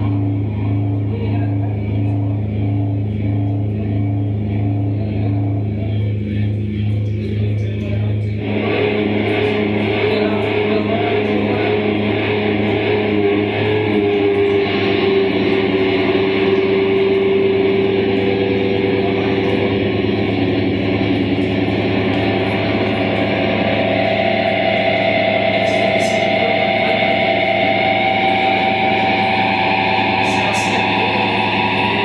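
Live experimental electronic music: layered droning tones under a note pulsing about twice a second, then about eight seconds in a dense, noisy wall of sound comes in suddenly, followed by long held tones, one of them rising slowly near the end.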